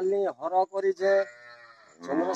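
A cow mooing: a low, drawn-out call that fades away over the second half, following a man's voice in the first half.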